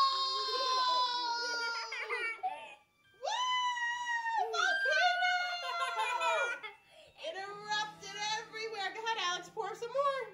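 Young children squealing in long, high-pitched cries of excitement, then giggling in quick bursts near the end, over faint background music.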